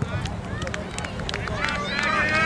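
Distant voices of youth soccer players and spectators calling out across an open field, several short shouts overlapping near the end, over a steady low rumble.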